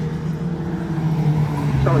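A pack of Lightning Rod race cars running on the oval just after the green flag, a steady engine drone made of several overlapping tones. A commentator's voice comes in near the end.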